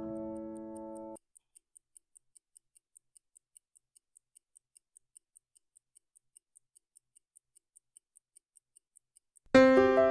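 Mechanical pocket watch movement, a Landeron in an H. Moser & Cie watch, ticking faintly and evenly at about five ticks a second. Piano music stops about a second in and comes back near the end.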